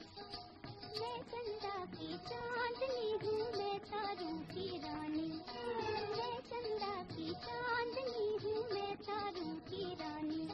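A woman's voice singing a Hindi film song melody over orchestral accompaniment; the voice comes in about a second in. It is an old, narrow-band film soundtrack recording.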